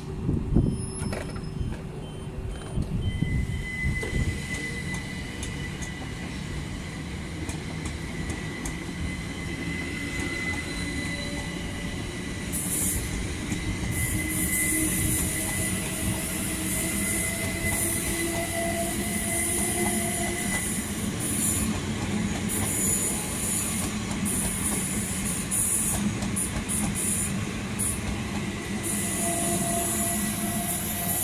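Electric multiple-unit trains moving through a station: rumble with a steady high tone and a slowly rising motor whine. From about twelve seconds in, intermittent high-pitched wheel squeal grows as a train comes close by.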